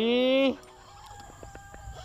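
A man's voice holding one drawn-out sung note, rising slightly in pitch, for about half a second. Then a quiet stretch with a few light clicks from the spinning reel being handled.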